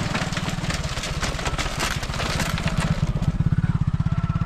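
A small motorcycle engine runs with a fast, even beat as the bike rides across a bamboo-strip bridge and passes close by, loudest near the end. Its wheels set off a rapid clatter of loose bamboo slats, mostly in the first half.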